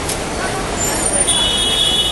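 Busy city street noise, traffic and crowd voices mixed together, with a high steady electronic tone coming in a little past halfway.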